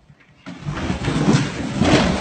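A cardboard box sliding and bumping down carpeted stairs: a loud, rough rumble of knocks that starts about half a second in and grows louder.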